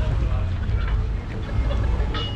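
Unsteady low rumble of wind buffeting the microphone, with people talking faintly in the background.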